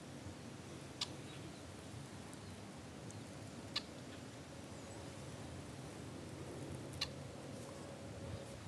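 Faint, calm outdoor ambience on still water, broken by three short, sharp high-pitched ticks: about a second in, near the middle, and near the end.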